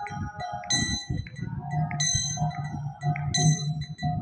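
Brass kartals (small hand cymbals) struck together about once a second, each strike ringing on, over a held musical tone and low drumbeats, in an instrumental passage of a devotional kirtan between sung lines.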